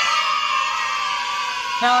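A crowd cheering and screaming, loud, starting suddenly and holding steady for about two seconds before cutting into speech.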